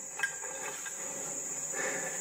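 Insects trilling in one steady high-pitched drone, with a few light clicks in the first second as plates are picked up off the stones, all played back through a TV speaker.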